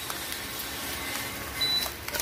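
Omelette with tomato and onion frying in a nonstick pan: a steady sizzle, swelling slightly near the end as the pan is moved.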